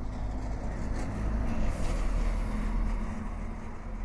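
A low rumble with a hiss over it, swelling louder through the middle and easing off near the end.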